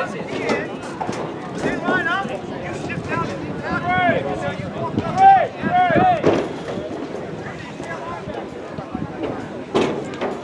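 Several voices of players and spectators talking and calling out over each other, with no clear words. The calls are loudest about four to six seconds in, and a single sharp clap or knock comes near the end.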